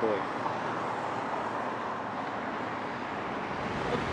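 Steady outdoor background noise: an even hiss-like haze with no distinct events.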